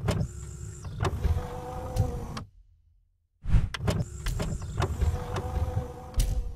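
Mechanical whirring sound effect, like a small electric motor, with clicks and a low rumble. It runs twice, each time for about two and a half seconds, with a short silence between the runs.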